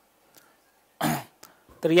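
A man gives one short, sharp cough about a second in; speech begins near the end.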